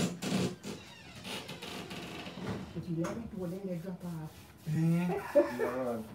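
A person's wordless voice: drawn-out vocal sounds, with no recognisable words, from about halfway through.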